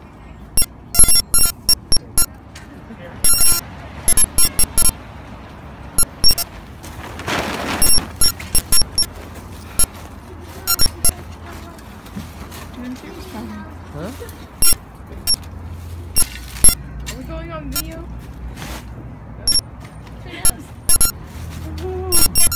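Irregular sharp metallic knocks and scrapes from long-handled work tools striking the ground and ice, with voices in the background.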